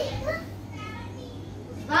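Children playing: a faint, short child's voice just after the start, then a lull, and near the end a girl's loud, drawn-out sung "waan" begins.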